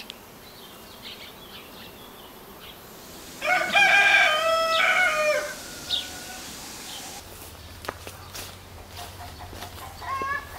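A rooster crowing once: a single call of about two seconds starting about three and a half seconds in, dropping in pitch toward its end.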